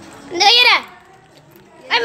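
A child's high-pitched voice calling out in a short rising-and-falling cry about half a second in, then again near the end.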